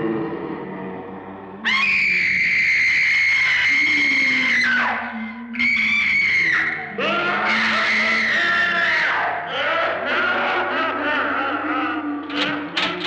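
High-pitched screams over eerie horror-film music. One long held scream starts suddenly about two seconds in and falls off near five seconds, a shorter scream comes around six seconds, then several screams and wails overlap to the end.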